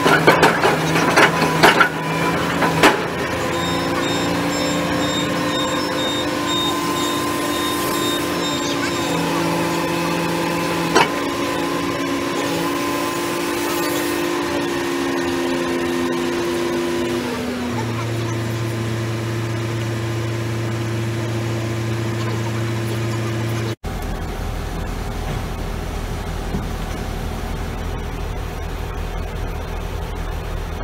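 Bored piling rig running steadily, its engine and hydraulics giving a held whine that drops in pitch partway through, with a few sharp knocks in the first three seconds and one more near the middle. Near the end the sound changes abruptly to a steadier, noisier machine hum.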